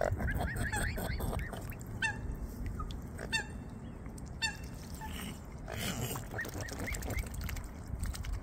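Mute swans feeding at close range, giving short high calls: a quick run of them at the start, single calls a few times in the middle, and another run near the end.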